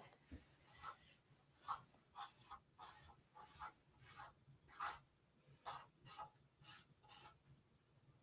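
Faint Sharpie marker strokes as a drawing is made: a series of short, irregular scratchy strokes with pauses between them.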